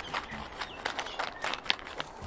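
Plastic cheese packaging being cut open and handled: a run of quick, irregular crackles and clicks.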